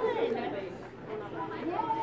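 People talking, with indistinct chatter around them; no other sound stands out.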